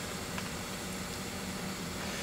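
Steady background hiss with a faint low hum and no distinct events: room tone.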